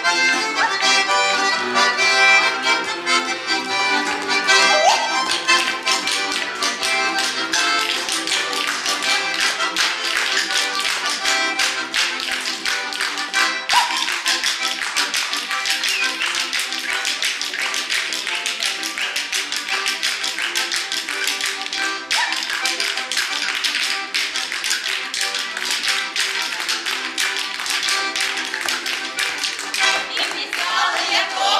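Russian folk dance tune played live on accordion and balalaika, with a fast, dense run of sharp taps through most of it.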